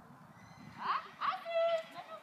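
A high-pitched voice calling out: two quick gliding cries about a second in, then a held high note, with faint hoof thuds of horses moving on the arena sand underneath.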